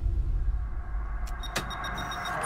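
Airliner cockpit sound: a steady low engine drone, then a click and a rapid run of short, high-pitched instrument beeps in the second half as a hand works the cockpit controls.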